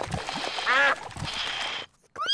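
Cartoon ducks quacking, a burst of arching calls about two-thirds of a second in, over the steady hiss of a toy paddle steam boat that cuts off near the end.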